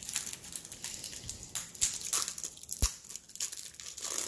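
Clear plastic film wrapped around a rolled canvas crinkling and crackling as fingers handle it and pick at it to unwrap it, with one sharp click about three seconds in.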